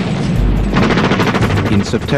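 Rapid machine-gun fire: a fast, even stream of shots that starts under a second in, over a deep rumble.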